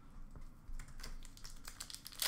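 Foil trading-card packs being picked up and handled on a counter: a loose series of light clicks and taps.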